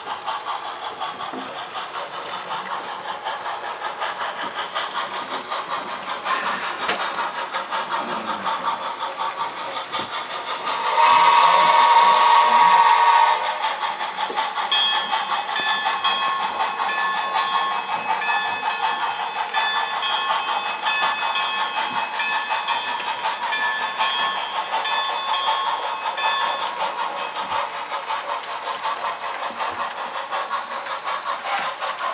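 Sound-equipped HO-scale model steam locomotive running, with a steady rapid chuff from its sound decoder. About eleven seconds in there is a loud whistle blast of roughly two and a half seconds, then a run of evenly repeating short tones that lasts about twelve seconds.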